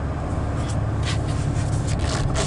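2005 Honda Odyssey's 3.5-litre V6 idling, a steady low hum heard from inside the cabin, with a few faint light clicks over it.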